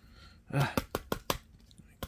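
A trading card being forced into a tight plastic card holder: several short, sharp clicks and taps of plastic on card. A brief spoken 'uh' comes about half a second in.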